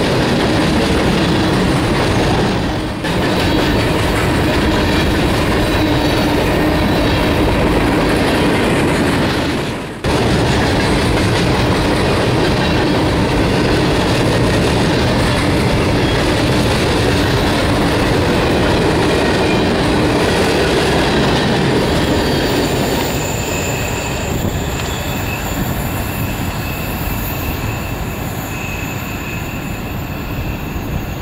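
Empty freight gondola cars of a unit train rolling past close by: a steady, loud rumble of steel wheels on rail. From about three quarters of the way in, the sound thins and steady high-pitched wheel squeal comes in.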